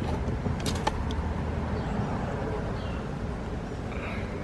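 A steady low background rumble, with a few faint clicks in the first second.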